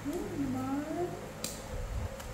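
A baby monkey's short wavering call, about a second long, that dips and then rises in pitch, followed by a single light click.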